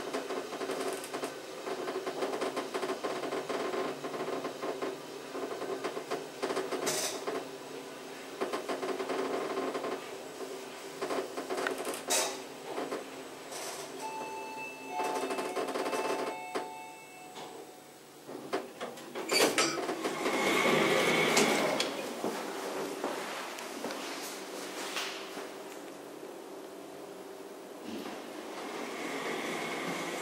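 Small passenger lift descending: the car runs with a steady hum and occasional clicks, then a few electronic beep tones sound about halfway as it arrives. The car stops, and after a click the doors slide open on their door motor, with a quieter door movement near the end.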